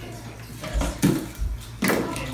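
Hands working inside a glass terrarium: three short knocks and clinks of things against the glass and the dish inside it, the loudest near the end.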